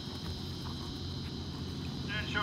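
Steady high-pitched chorus of insects trilling, over a low steady hum.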